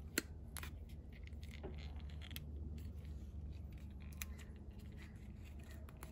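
Cutters snipping and cracking the plastic ring off a shift lever's inner shift boot: a few sharp clicks, the first and loudest just after the start, over a low steady hum.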